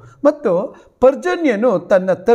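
A man's voice speaking, with a brief pause a little under a second in.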